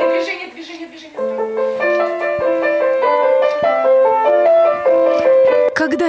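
A child playing a simple melody note by note on a white Sonata grand piano. The playing breaks off early, and the same opening phrase starts again just after a second in and runs on steadily.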